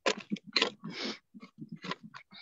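Irregular crunching and scraping as a frozen letterbox is worked open by hand, with a few dull knocks near the end.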